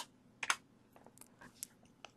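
Near silence with a few faint clicks: two close together about half a second in, and one more after about a second and a half.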